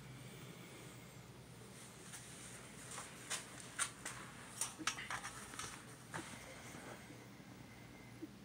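Faint handling sounds: a scatter of light clicks and taps in the middle seconds as a puppy is lifted and set into a metal bowl on a digital kitchen scale.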